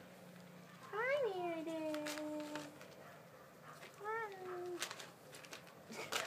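A golden retriever puppy giving two drawn-out whining howls. The first, about a second in, rises briefly and then slides down in pitch for nearly two seconds; the second, shorter and of the same shape, comes about four seconds in.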